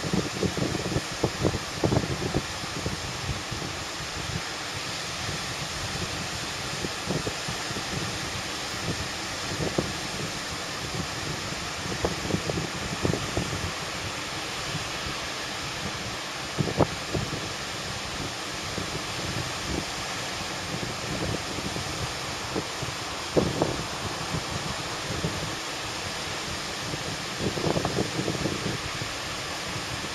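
Wind buffeting the microphone in a fairly strong onshore breeze, coming in irregular low gusts every few seconds, over a steady hiss of small breaking surf.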